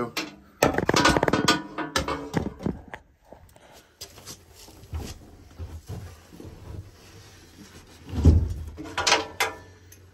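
Clattering handling noise and knocks as the camera and grease gun are moved about, with one heavy low thump a little past eight seconds in.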